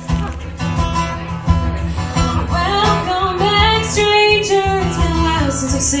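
Acoustic guitar strummed live as a song begins, with a voice singing over it and the first lyric coming near the end.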